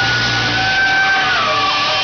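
Live hard rock band playing through amplifiers, electric guitar and bass. A single high note is held steadily and then drops to a lower pitch about one and a half seconds in, as the low bass fades back.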